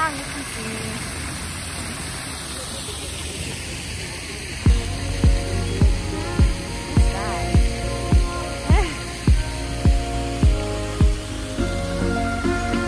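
Fountain jets splashing into a stone basin, a steady rush of water. About four and a half seconds in, background music comes in with a steady beat of about two beats a second.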